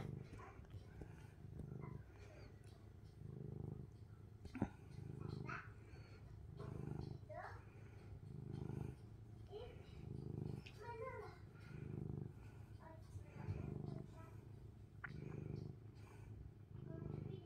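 A domestic cat purring while being stroked, the purr swelling and fading in an even cycle about every second and a half. A single sharp click sounds about four and a half seconds in.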